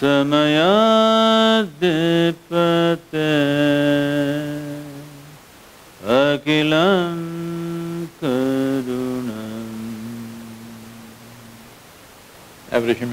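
A man's voice chanting a mantra in long, held notes. There are several phrases with short breaths between them, and the pitch glides up and down between notes. The last note is low and long, and it fades slowly.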